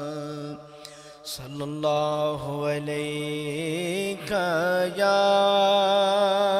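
A man singing Punjabi dohre solo in long, drawn-out notes with a wavering pitch. There is a brief break about a second in, and a louder held note near the end.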